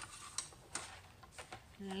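A few light, separate clicks and taps as a sheet of thick cardstock is flipped over and set back down on a plastic paper trimmer.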